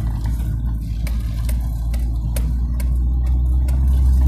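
A car driving slowly along a rough dirt track, heard from inside the cabin: a steady low engine and road drone, growing slightly louder, with several sharp knocks and rattles from bumps in the track.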